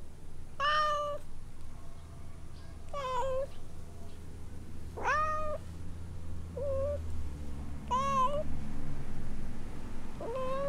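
Tabby-and-white domestic cat meowing repeatedly: five short meows, about one every two seconds.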